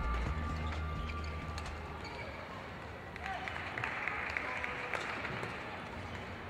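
Background music with a deep bass fading out over the first second or two, giving way to the ambience of an indoor sports hall with faint voices.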